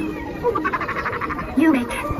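A rapid rattling, croak-like sound effect, about fifteen clicks a second for under a second, of the kind played by Halloween animatronic props, with a short voice-like call near the end.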